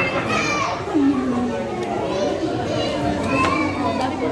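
Busy restaurant chatter: many overlapping voices, children's voices among them, with no single clear speaker.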